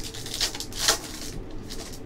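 Foil wrapper of a baseball-card pack crinkling as it is handled and pulled open by hand, with louder rustles about half a second in and again near one second.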